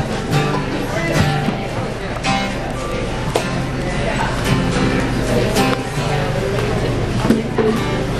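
Unamplified acoustic guitar strumming, the band playing in the crowd without microphones, with voices of the audience around it.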